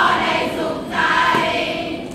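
A large group of voices singing a cheer song in unison, in two phrases about a second apart.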